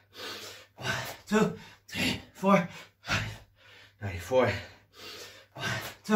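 A man panting and gasping hard from exertion during burpees: short, loud, partly voiced breaths, nearly two a second, with a faint steady low hum beneath.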